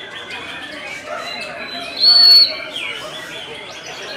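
Several caged songbirds singing and calling over one another, with one loud, high, held whistle about two seconds in. The bird in view is a white-rumped shama (murai batu).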